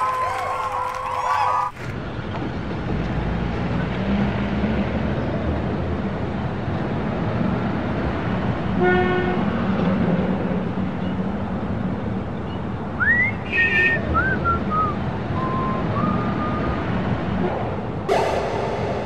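Crowd cheering cuts off abruptly about two seconds in and gives way to steady city street traffic noise. A car horn toots briefly about halfway through, and a few short high whistling tones come and go a few seconds later.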